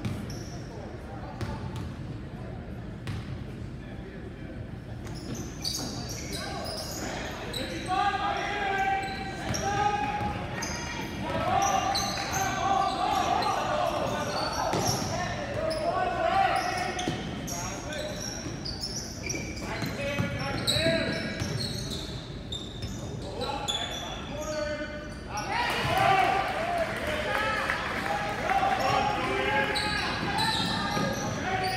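A basketball bouncing on a hardwood gym floor, with shouting voices of players and spectators echoing in a large gymnasium; the voices grow louder and busier about eight seconds in as play picks up.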